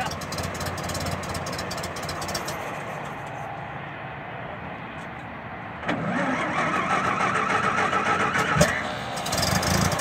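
1919 Templar roadster's engine running at a steady idle while it warms up from cold. About six seconds in it grows louder for about three seconds, with a rippling whir on top, then eases back.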